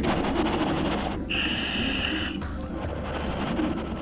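Scuba diver exhaling through a full-face mask's regulator: one rush of venting bubbles lasting about a second, starting about a third of the way in, over a background music bed.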